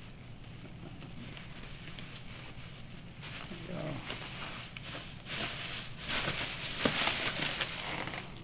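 An inflated plastic trash bag rustling and crinkling as it is handled, louder over the last three seconds.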